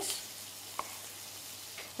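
Beef burger patties sizzling steadily in a frying pan, with a single soft knife tap on a plastic cutting board about a second in.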